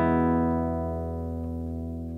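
Last chord of a song on a nylon-string classical guitar, struck just before and left to ring, fading slowly and evenly with no new notes.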